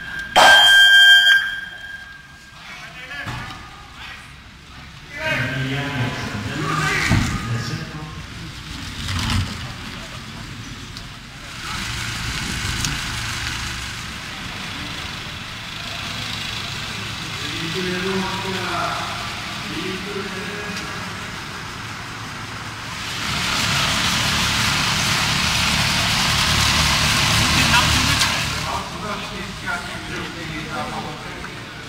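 Electronic start-clock beeps: a loud high tone in short pips at the opening, as used to count down a rider in a track cycling start gate. Voices follow, and a steady rushing noise fills several seconds near the end.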